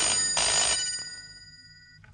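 Rotary-dial desk telephone's bell ringing: one ring lasting most of the first second, its tones then fading away.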